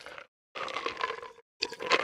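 A person drinking root beer in two swigs of about a second each.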